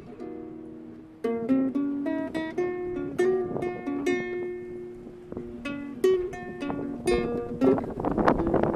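Ukulele played solo in a microtonal improvisation in 7-limit just intonation. A few soft held notes open it, then from about a second in the playing turns louder, with quickly plucked melody notes.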